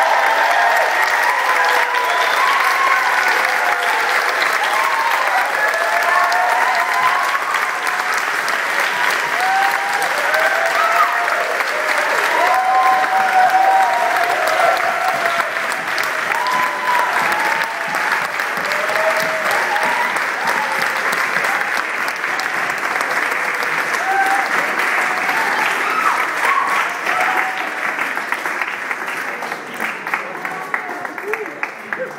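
Audience applause, a dense steady clapping with voices of the crowd mixed in, thinning out near the end.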